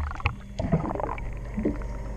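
Underwater sound beside a boat hull: a steady low hum with scattered small clicks and knocks, and a louder knock right at the start.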